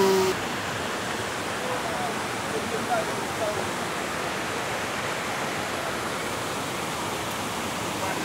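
Steady rush of river water pouring over a small rocky cascade, with faint voices in the background.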